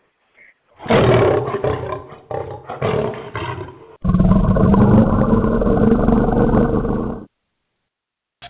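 Recorded lion roar sound effect played loud as a segment-transition stinger. A rough roar begins about a second in, then a second, longer and steadier roar comes in about halfway through and cuts off suddenly near the end.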